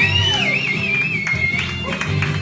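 Rock karaoke backing track with guitar, played loudly through the PA speaker. A high wavering note sits over it for the first second and a half.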